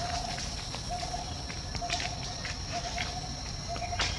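Outdoor ambience: a short low call repeating about once a second over a steady high-pitched whine, with faint light rustling.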